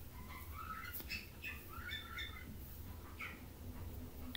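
Faint, scattered chirps of a small bird: short calls, some rising in pitch, over a low steady hum.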